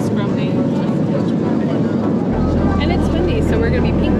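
Airliner cabin noise: a steady rush from the engines and air system under the chatter of passengers' voices. A deep low hum comes in about halfway through.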